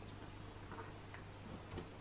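Quiet room tone with a steady low hum and a few faint, light clicks.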